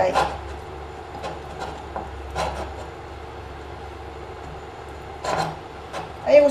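Bare fingers smearing butter over the bottom of a glass baking dish: soft, intermittent rubbing on the glass, with a steady low hum underneath.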